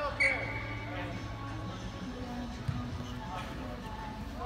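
Overlapping distant shouts and calls from rugby players and onlookers on an open field. A brief high steady tone sounds just after the start, and a short dull thump comes a little before three seconds in.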